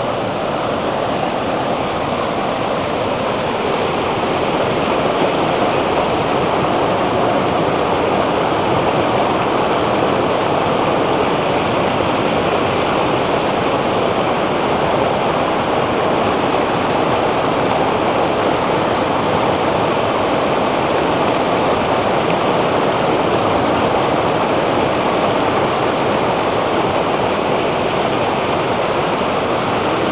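River rapids: white water rushing and churning steadily over and around a boulder.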